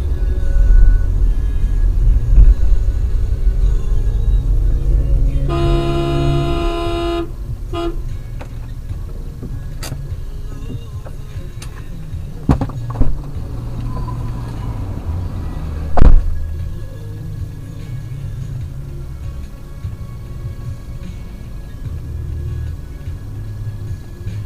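Car dashcam recording of road and engine noise, loud at first and then quieter. A car horn sounds for about a second and a half around six seconds in. After it come several sharp knocks, the loudest about sixteen seconds in.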